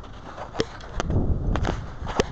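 Handling noise from a body-worn camera: a low rumble of fingers rubbing near the microphone, growing stronger about a second in, with a few sharp clicks.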